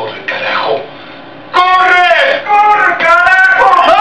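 Loud wordless shouting: a short cry falling in pitch near the start, then from about a second and a half in, long high-pitched yells, each falling away at the end.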